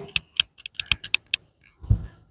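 A quick run of light, sharp clicks, about eight in a second and a half, like typing, followed near the end by a duller knock.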